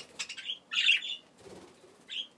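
Budgerigars giving a few short, scratchy chirps, the loudest about a second in.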